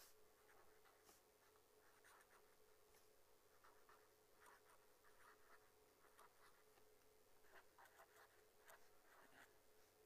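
Faint scratching of a ballpoint pen writing on paper in short strokes, over a steady faint hum.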